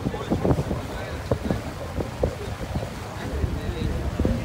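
Low rumble of a river boat under way, with wind buffeting the microphone and indistinct chatter of people on board.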